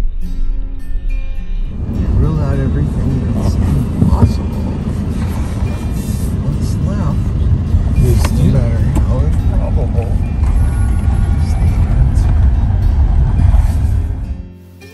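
A car's road noise heard inside the cabin: a loud, heavy rumble from the tyres on cobblestones. It starts about two seconds in, after a short stretch of guitar music, and runs until a fade near the end.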